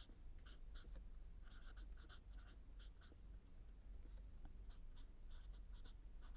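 Felt-tip marker writing on a board: faint, short strokes coming in quick runs.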